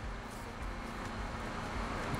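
Steady background noise: an even hiss with a low hum beneath it, with no distinct events.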